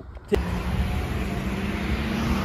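Road traffic: a car driving past close by, with steady engine and tyre noise that starts abruptly about a third of a second in.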